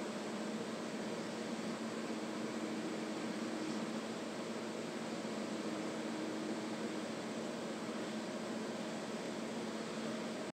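Steady even hiss with a faint low hum: the turtle tank's water pump and filter running, keeping the water moving.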